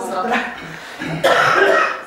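A person's voice, then a short harsh cough about a second in.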